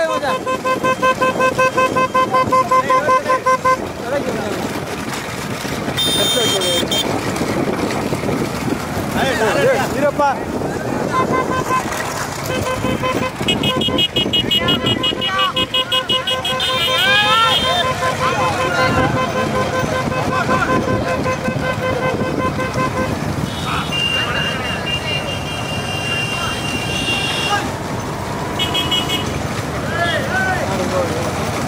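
Motorcycle horns honking in quick repeated beeps, about four a second, over the running engines of a pack of motorcycles, with men shouting. The rapid honking comes in two long stretches, at the start and through the middle, with other horn tones in between and near the end.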